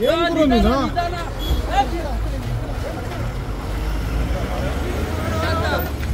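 Police van's engine running with a steady low rumble, under a crowd's shouting voices; one loud shout in the first second.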